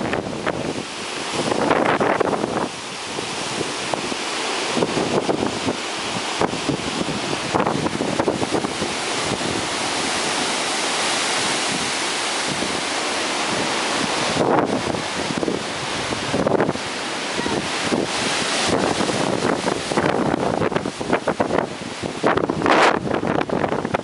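Hurricane-force wind rushing through trees in gusts, swelling and easing, with surges about a couple of seconds in and again near the end. Wind buffets the microphone at times.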